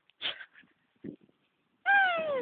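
Two short, soft vocal sounds from a toddler about a second apart, the first higher-pitched and the second a lower grunt.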